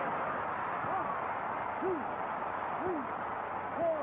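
Boxing crowd cheering and shouting after a knockdown, with a voice calling out about once a second in time with the knockdown count.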